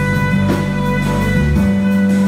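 Live small jazz band playing: a saxophone holds a long note over grand piano and bass, then moves on near the end.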